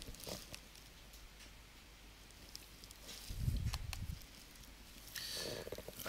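Faint room tone with a short low rumble a little past the middle and a soft hiss near the end.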